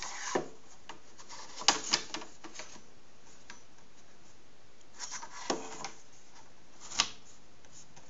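PVC pipe lengths sliding and knocking on a miter saw's metal table as they are pushed up against a wooden stop. A few scattered clacks and rubs, the sharpest near two seconds and seven seconds in.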